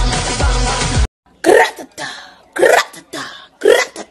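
Pop music plays for about a second and cuts off abruptly. After a short gap, a woman makes four short, raspy vocal bursts in her throat, spaced about half a second to a second apart.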